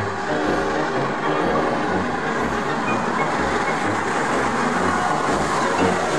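LMS Jubilee class three-cylinder 4-6-0 steam locomotive Leander running through at speed with its train, growing a little louder as it draws near.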